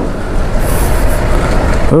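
Motorcycle riding slowly over a rough, muddy, slippery road: a steady, loud rumble of engine, tyres and wind with no clear engine note.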